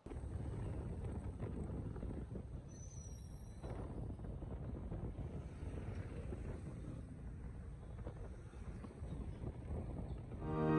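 Street traffic noise: motorcycles and cars passing on a busy road, with wind on the microphone.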